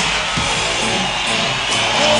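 Instrumental opening of a new song: band music at a steady level, with no singing yet.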